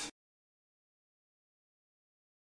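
Silence: the sound track cuts out completely just after the start.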